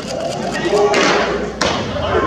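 A pitched baseball smacking into a catcher's mitt: one sharp thud about one and a half seconds in.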